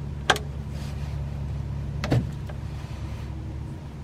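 A hex-bit ratchet on an oil pan drain plug being loosened: two sharp metallic clicks, one near the start and one about two seconds in, over a steady low hum.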